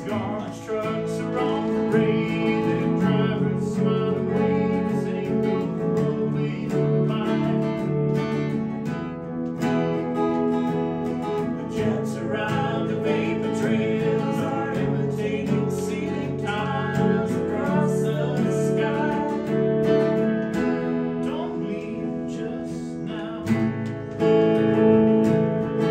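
A strummed acoustic guitar and an electric guitar playing a song together live, with a voice singing in phrases over them.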